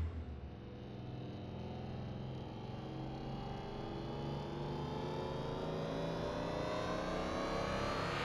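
Formula 1 car engine note climbing slowly and steadily in pitch, with no gear changes, growing slightly louder.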